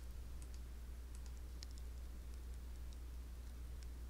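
Faint, irregular clicks from working a computer's mouse or keys, scattered through the pause, over a steady low hum.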